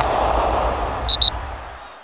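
Sound effects for an animated logo reveal: a noisy swell with a deep rumble underneath that fades away toward the end, cut by two short high-pitched bleeps, one right after the other, a little past halfway.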